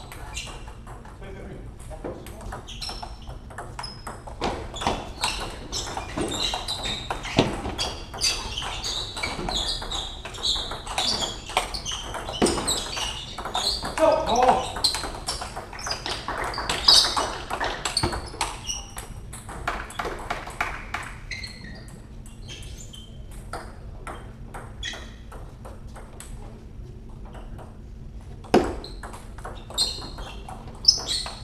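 Table tennis rallies: the celluloid ball clicking off the bats and the table in quick runs of hits, with a lull in play near the end. Voices carry in the hall.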